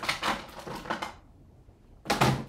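Small hard objects clicking and rattling in quick succession for about a second, then quiet: craft supplies being picked through by hand.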